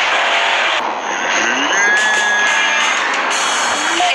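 Off-road buggy's engine running hard at high revs as it charges a dirt jump, a loud, steady rush of engine noise.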